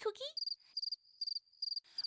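Cartoon sound effect of a cricket chirping in a run of short, high chirps, about two or three a second: the stock gag for an empty, awkward silence, here when a called name gets no answer.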